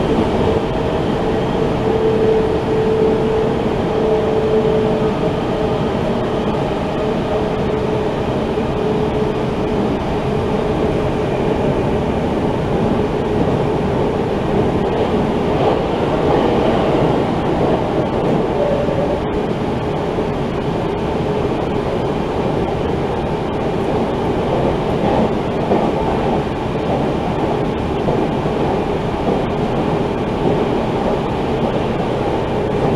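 Running noise of an electric passenger train, heard from inside the car: a steady, loud rumble of wheels on rail. A hum sits over it for the first five seconds or so, then fades.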